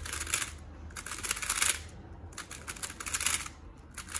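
Plastic 3x3 speed cube being turned fast through a T-perm algorithm: rapid clicking and clacking of the layers, in several quick bursts with short pauses between.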